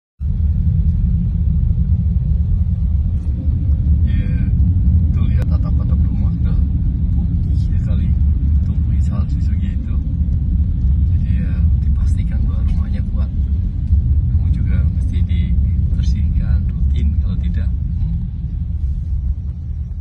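Steady low rumble of a car's road and engine noise heard from inside the cabin while driving on a snowy road, with faint voices in the background.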